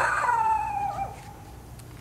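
A small dog giving one long whine-howl that falls in pitch over about a second, ending in a short wobble.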